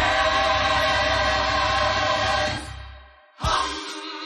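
Gospel choir singing a loud, full held chord that dies away about three seconds in, followed by a sudden, quieter new chord.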